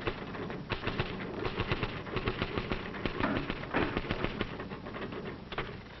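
Office typewriters clattering, keys striking in a quick, uneven run of clicks.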